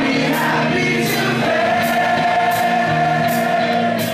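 Live glam metal band playing a slow song: the male lead singer holds a long sung note over sustained chords, with cymbal hits on the beat.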